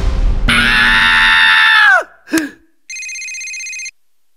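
A telephone ringing in two long rings, with a short grunt from a sleepy boy between them.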